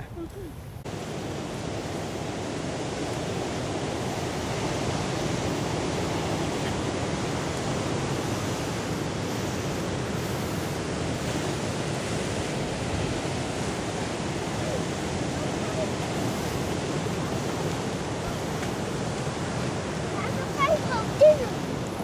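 Wind and breaking surf at the shore: a steady rushing noise that sets in about a second in and then holds evenly.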